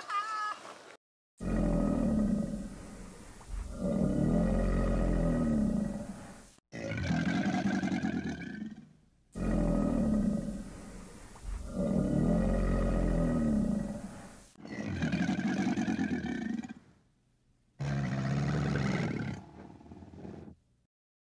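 Crocodile growling: a series of long, deep, rasping calls, each a couple of seconds, broken by abrupt cuts and short gaps, the same calls repeating.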